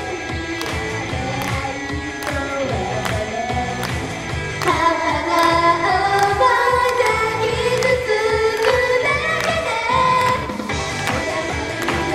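Female J-pop idol group singing into handheld microphones over an upbeat pop backing track, played through PA speakers, with a steady beat. The vocal line gets louder about four and a half seconds in.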